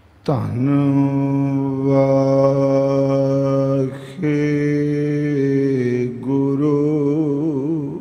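A man's voice chanting in long held notes on one steady pitch: three drawn-out phrases with short breaths about four and six seconds in, the last one wavering in pitch.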